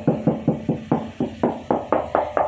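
Fingers rapidly tapping a car's steel door panel, about five quick knocks a second, checking by sound that the bodywork is original with no filler underneath.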